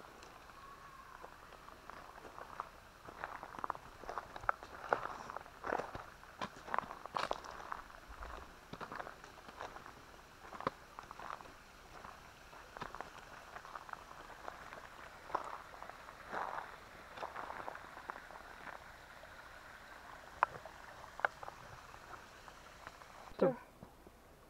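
Footsteps crunching on a gravel trail at a walking pace, uneven and fairly faint.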